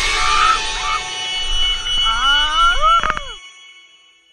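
Background music fading out. Near the end a person's voice gives a shout that rises and then falls in pitch, with a sharp click just after it, and then the sound drops away.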